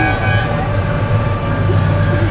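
Sky Rider tower ride running: a steady low machine hum with a held tone above it, the tone brighter for about the first half-second.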